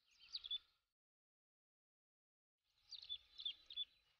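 Baby chicks cheeping: a couple of short, high peeps near the start, then a quick run of several more about three seconds in.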